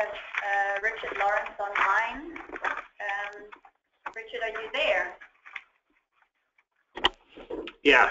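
People talking, not picked up clearly enough to transcribe, with a pause of about a second and a half near the end, then a few sharp clicks or knocks before the talking resumes.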